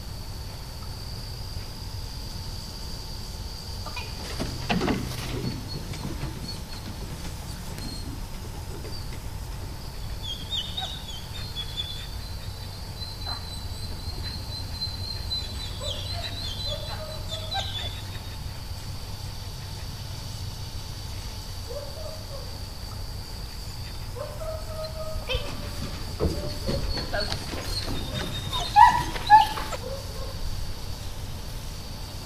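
A steady high-pitched insect drone with scattered bird calls over it, and a few louder sharp calls near the end.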